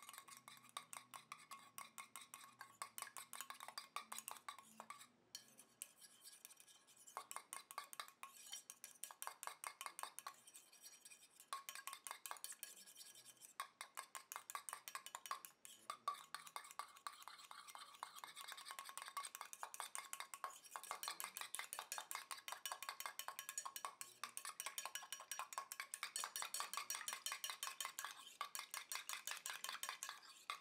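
Small wire whisk stirring a watery mixture in a stainless steel saucepan: faint, rapid metallic ticking of the wires against the pan, with a few short pauses, a little louder in the last third.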